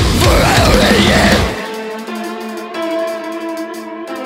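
Deathcore band playing at full weight, with distorted guitars, drums and a vocal. About a second and a half in the drums and low end cut out abruptly, leaving a few held melodic notes ringing on their own.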